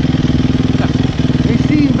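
Dirt bike engine idling steadily close by.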